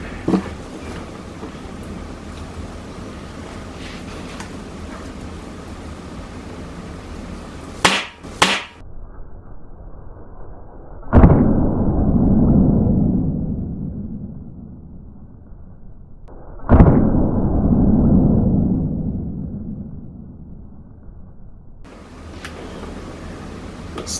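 .22 air rifle shot: two sharp cracks half a second apart about eight seconds in. Then the miss replayed twice as deep, slowed-down booms, each fading over a few seconds, as the pellet hits the dirt.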